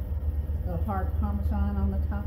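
A woman's voice speaking from a little over half a second in, over a steady low hum.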